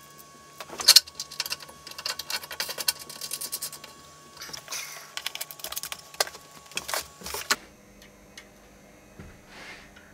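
Rapid small metallic clicks and jingles from cable connectors being handled, threaded and plugged together. The clicking runs thick for about seven seconds, then stops, leaving a few soft clicks.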